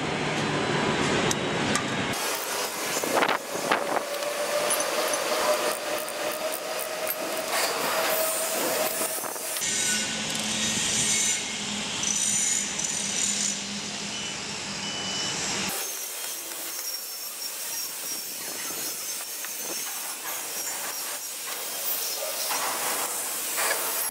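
Hand wrench clicking and scraping as the bolts of a power hammer's crankshaft bearing cover are tightened, over a steady hiss of workshop noise. The background changes abruptly a few times.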